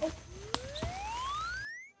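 A single whistle-like tone gliding smoothly upward in pitch for about a second and a half, with two sharp clicks near its start; it cuts off abruptly.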